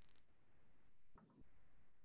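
High, glittery electronic sound effect from the Kahoot quiz game, two very high tones pulsing rapidly like tinkling coins, cutting off suddenly a quarter second in. After that only faint room noise, with a soft short sound about a second in.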